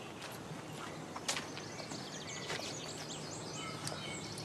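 Footsteps, a few slow steps about a second apart, over a steady outdoor background hiss. A small bird sings a quick run of short, high chirps in the second half.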